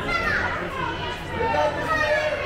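Indistinct background chatter of children's voices, several overlapping, with no words clear.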